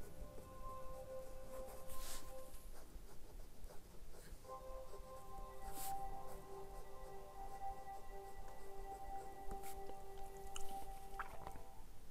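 Pen writing on paper, faint scratching strokes over soft, sustained musical tones. The tones hold one chord, then shift to another about four and a half seconds in.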